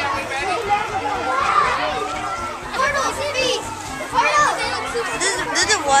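Many children's voices talking and calling out over one another, a busy continuous chatter with no single voice standing out.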